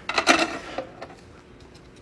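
Plastic petri dish set down on the shelf of a small mini-fridge-style incubator: a brief clatter of a few quick knocks, then a faint click.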